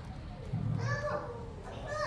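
Faint background voices: a few short rising and falling utterances, well below the level of the main speaker.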